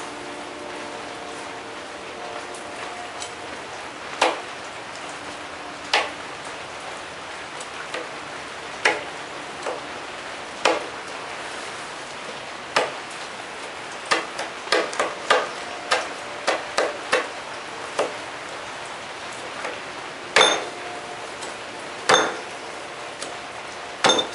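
A knife stabbing repeatedly through a fully charged lithium polymer pouch cell into a wooden workbench: sharp, irregular knocks, with a quicker run of them a little past the middle.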